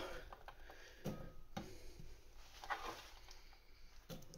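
A knife cutting cucumber into cubes on a chopping board: a few faint taps and clicks of the blade against the board, the clearest about a second in and again half a second later.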